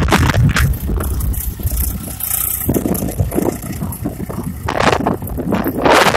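Swaraj tractor's diesel engine pulling a tine cultivator through dry soil, a steady low rumble. Gusts of wind buffet the microphone, loudest near the end.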